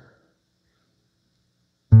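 Near silence, then just before the end a low note is struck on an acoustic guitar and rings on loudly.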